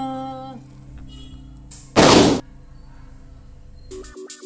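A long sung 'haaa' note, held and then cut off about half a second in. About two seconds in comes a short, loud puff of noise: a cartoon smoke 'poof' sound effect as the singer vanishes.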